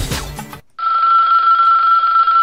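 Music stops about half a second in. Then a telephone rings once, a single steady, high-pitched ring lasting about two seconds.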